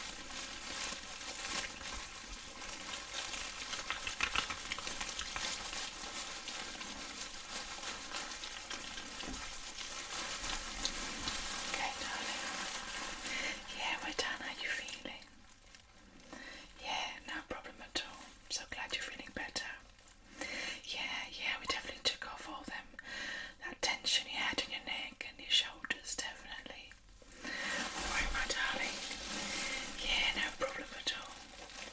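Close-miked wet rubbing of gloved hands, a steady hiss that breaks up about halfway into irregular, crackly strokes and turns steady again near the end.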